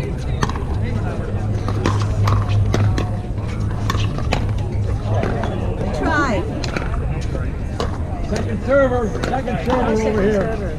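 Paddles striking a plastic pickleball: repeated sharp pops at irregular intervals during a rally, with more hits from neighbouring courts. Voices call out about six seconds in and again near the end.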